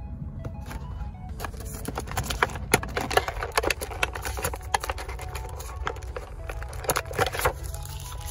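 Plastic packaging crinkling and rustling as it is handled, with many sharp crackly clicks, over a low steady rumble and faint background music.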